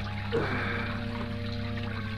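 Splashing water of a garden fountain, a radio-drama sound effect, under a low held chord of background music.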